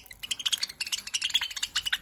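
Budgerigars squabbling at a seed dish: a dense run of rapid, high-pitched chirps and clicks.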